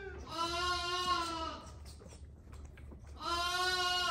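Lambs bleating while being bottle-fed: two long, steady calls, each about a second and a half, the second starting about three seconds in.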